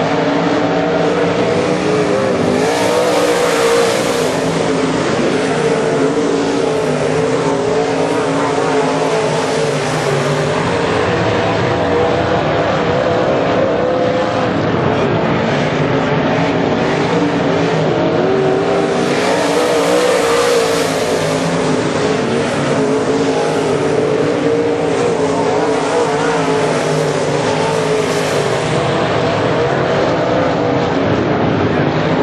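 A field of IMCA Modified dirt-track race cars running at racing speed, their V8 engines blending into one loud, steady drone that wavers in pitch as drivers lift and accelerate through the turns. It swells as the pack passes close, about three seconds in and again about twenty seconds in.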